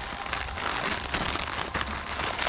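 Thin clear plastic packaging bag crinkling and rustling as it is handled and pulled open by hand, an irregular crackle of fine ticks.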